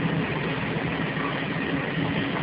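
London Underground A Stock train running, heard from inside the carriage: a steady low motor hum over wheel and track noise.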